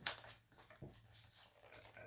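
Faint handling sounds of neoprene straps and Velcro being pressed and adjusted around a football, with a short tap at the start and another a little under a second in.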